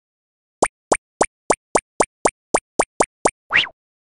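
Cartoon plop sound effects from an animated intro: a quick run of eleven short plops at about four a second, then one longer plop rising in pitch near the end.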